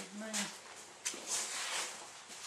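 Faint voices, with a short murmured sound near the start, and a few brief rustles of movement in a small room.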